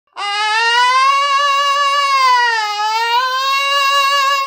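A man singing one long, loud, bright sustained note on an open vowel, high for chest voice. The pitch climbs slightly at first, sags about two-thirds of the way through and comes back up. It is a demonstration of the sharp, chest-like sound made when the cricoarytenoid lateralis muscle tenses the vocal cords, which lets chest voice be carried higher.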